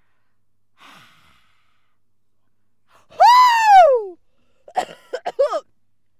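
A woman's voice lets out one loud, high-pitched squeal that swoops down in pitch about three seconds in, followed near the end by a few short bursts of giggling.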